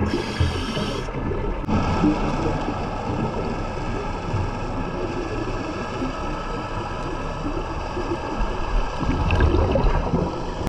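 Underwater ambience picked up by a camera in its housing: a steady noise carrying several high, unchanging tones, with low bubbling rumbles from divers' exhaled air near the start and again near the end.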